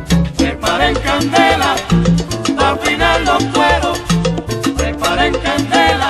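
Salsa band music: a repeating bass line and dense percussion under shifting melodic lines, with no words sung.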